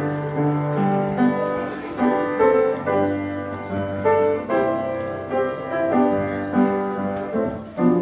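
Piano playing in a church, a chordal piece with held notes that change about every half second to a second.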